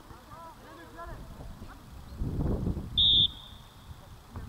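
A referee's whistle blown once, a short sharp blast about three seconds in that is the loudest sound, trailing off faintly. Before it, distant shouts from players on the pitch and a low rumble.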